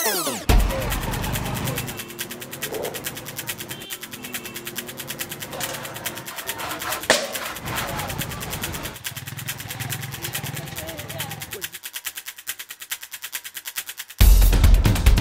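A falling whoosh ends in a low thump about half a second in. Then comes produced background music with a fast, even pulsing beat, mixed with indistinct voices and street sound.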